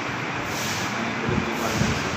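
Steady rushing background noise with two brief low thumps in the second half.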